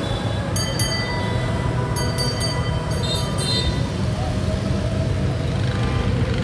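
Steady low rumble of a moving vehicle heard from on board, with a few short, high metallic clinks scattered through the first half.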